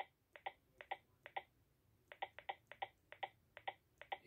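Luvicom Eclipse nurse call console giving a string of faint, short electronic double beeps as its touchscreen ring-volume arrow keys are tapped, with the pairs coming faster in the second half.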